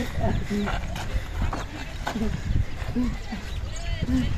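Short, indistinct voice sounds in scattered brief bits, over a steady low rumble.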